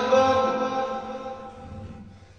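A man chanting Quranic recitation for ruqya, holding one long note that slowly fades away near the end.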